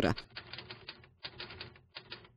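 Typewriter sound effect: rapid key clacks in a few short runs with brief pauses, laid under on-screen caption text being typed out.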